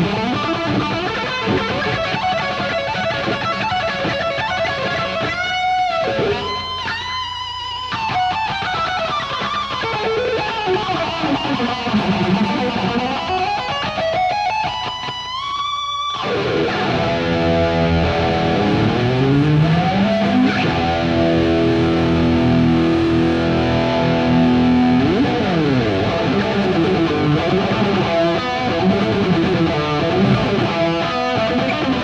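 Unaccompanied electric guitar solo in a heavy metal style, played live. Fast runs and pitch bends build into a long rising slide that cuts off suddenly about halfway through. Then come sliding notes up and down, and held tones.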